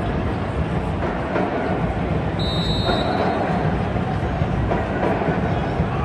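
Steady soccer-stadium crowd noise, heavy in the low end, with a short high-pitched whistle blast about two and a half seconds in, typical of a referee's whistle signalling a free kick to be taken.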